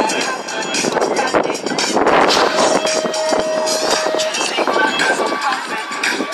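Spectators shouting and cheering as a pack of BMX riders leaves the start gate and races down the start hill. A steady beep lasting about a second and a half sounds midway.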